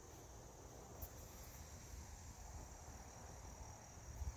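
Faint, steady insect chorus trilling in woodland, a continuous high-pitched drone, over a low rumble, with a small click about a second in.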